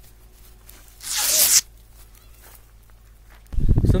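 A short burst of dry rustling and crackling, about half a second long, about a second in: dry grass and crop stalks crushed underfoot as someone climbs down into a ditch. A voice starts talking near the end.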